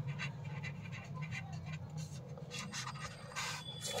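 Pen writing on paper: a quick run of faint, short scratchy strokes as a word is written, over a low steady hum.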